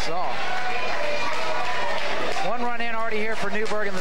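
A man speaking, in short phrases at the start and again from just past halfway, over steady background noise.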